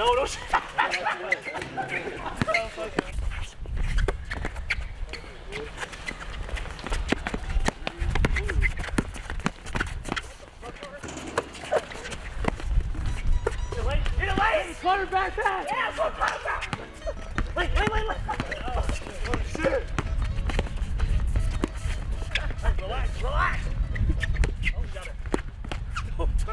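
Players' voices calling out during a pickup basketball game on an outdoor asphalt court, with many short knocks from the ball bouncing and shoes on the court, over music.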